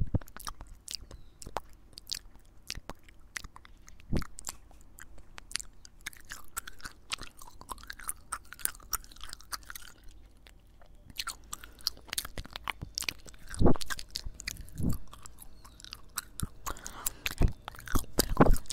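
Gum chewing and wet mouth sounds right against a handheld recorder's microphone: irregular sticky clicks and smacks, with a few louder pops in the second half.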